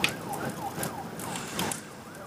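Emergency vehicle siren in a fast yelp, its pitch rising and falling about four times a second, with a few short clicks over it.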